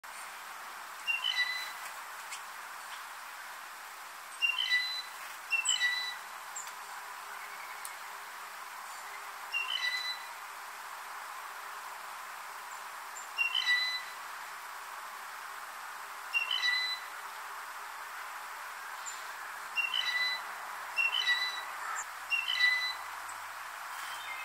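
Blue jay giving its squeaky-gate or rusty-pump-handle call about nine times, one every one to four seconds. Each call is a quick squeak followed by a short steady note, over a steady faint hiss.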